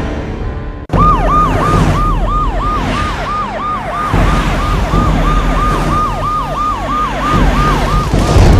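Emergency vehicle siren starting abruptly about a second in. It sounds in fast, repeated falling sweeps, about three a second, over a low rumble.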